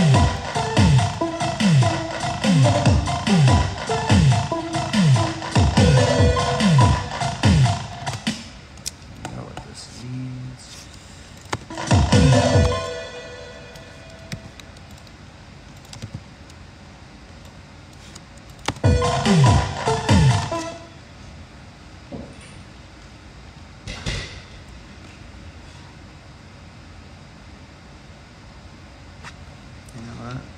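Electronic beat playing back from a music-production session: pitch-dropping electronic kick drums about two a second under sustained synth or keyboard tones, stopping about 8 s in. After that, short bursts of the kick drum are replayed a few times, near 12 s and around 19–20 s, with one more hit near 24 s, the kicks being auditioned while being edited.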